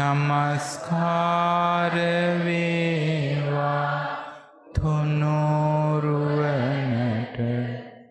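Buddhist monk chanting in a low, drawn-out voice: two long held phrases with a short breath break about halfway.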